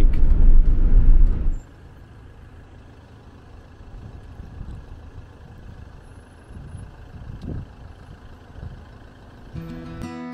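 Steady low rumble of road and engine noise heard from inside a vehicle driving on a highway, cutting off suddenly about a second and a half in. A much quieter steady background follows, and music comes in near the end.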